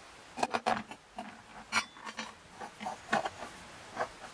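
Glass feeder bottle being fitted into its metal base and twisted into place: an irregular series of light knocks, clicks and short scrapes of glass against metal.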